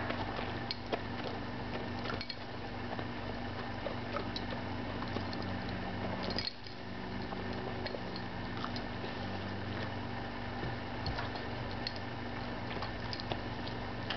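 An Airedale terrier licking and nibbling treat crumbs off carpet close to the microphone: scattered small wet smacks and clicks of tongue and teeth over a steady low background hum.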